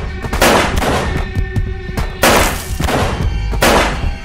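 Dramatic film soundtrack: dark music over a low rumbling drone, broken by three loud crashing sound-effect hits about a second and a half apart.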